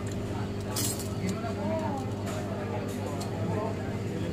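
Small metal tools and a phone circuit board clinking and tapping on a glass-topped work bench, a few sharp clicks, over a steady electrical hum.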